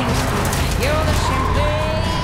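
Film soundtrack: music mixed with a Cadillac convertible's engine accelerating hard as the car pulls away, kicking up dust.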